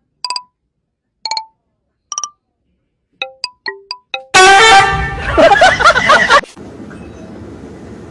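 Edited-in comedy sound effects: short pitched musical notes with dead silence between them, coming faster near the end, then a sudden very loud blaring horn-like blast for about two seconds.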